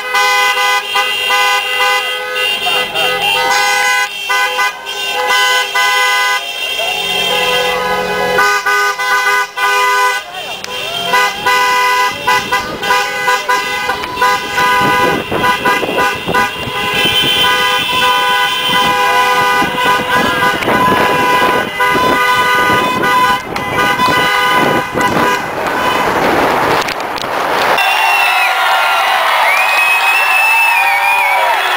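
Several car horns sounding together in long held blasts from a line of cars, with voices mixed in. Near the end the sound changes to a crowd's voices and cheering.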